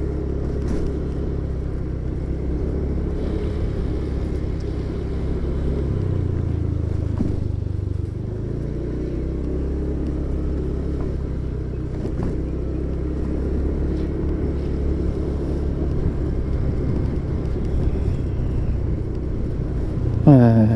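Motorcycle engine running at low road speed along with road and wind noise. The engine note steps up briefly about six seconds in, then settles back about two seconds later.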